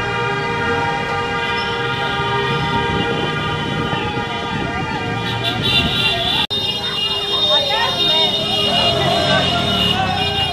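Horns held in a steady, continuous blare, with crowd voices shouting over them; the sound drops out for an instant just past halfway, then carries on.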